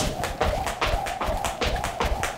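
Jump rope skipping on a rubber gym floor: the rope slaps the floor and the feet land in a quick, even patter of taps, several a second.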